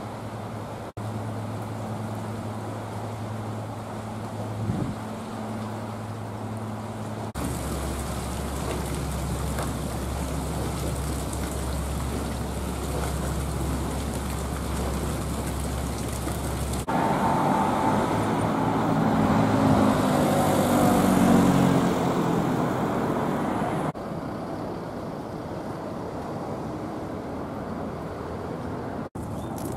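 A string of outdoor sounds joined by cuts. First a steady low hum, then water churning with a steady low rumble under it from about seven seconds in. From about seventeen seconds comes city street traffic, with a passing motor vehicle as the loudest part, easing to a quieter traffic hum near the end.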